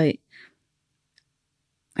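Conversational pause: a spoken 'yeah' trails off, then a faint short breath-like hiss, one tiny click around the middle, and speech begins again near the end; otherwise near silence.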